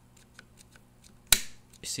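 A few faint handling ticks, then one sharp metallic click from the Vepr 12 shotgun's trigger group as the trigger is worked by hand.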